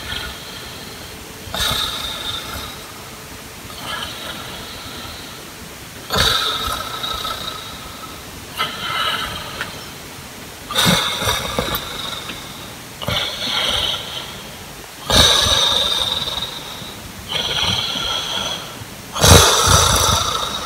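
A man snoring in his sleep: a loud rasping snore about every four seconds, with a softer breath between each.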